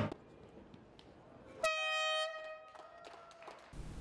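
A single short horn-like note with a sudden start. It holds one steady buzzy pitch for about half a second, then fades, between stretches of near silence.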